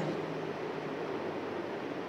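Steady, even background hiss of room noise, with no other event.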